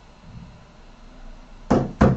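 Quiet room tone, then a single short, sharp knock near the end.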